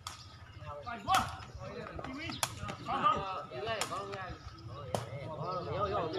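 A sepak takraw ball being struck: five sharp hits roughly a second and a quarter apart, with men's voices chattering around them.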